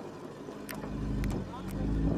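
Men's voices calling out while the group walks, with wind rumbling on the microphone in the second half and a few sharp clicks.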